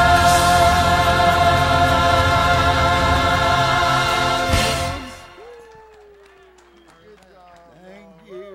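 Church choir and band singing and playing a loud, sustained final chord that cuts off abruptly about five seconds in. After it, only faint voices are left.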